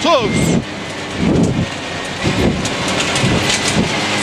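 Citroen C2 rally car driven hard on a gravel stage, heard from inside the cabin: the engine revs rising and falling under a dense, rain-like spray of loose gravel hitting the underbody and wheel arches.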